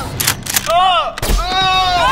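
Gunshot sound effects: a quick cluster of sharp shots near the start and a single heavier shot with a low boom a little past the middle. High wavering voice-like sounds come between them.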